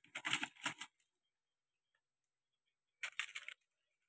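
Brief clicking and clattering of plastic food containers and utensils being handled while food is served: a cluster of clicks in the first second and another short cluster about three seconds in.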